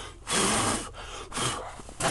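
A man sighs: a breathy exhale lasting about half a second, then a second, shorter and fainter breath about a second in.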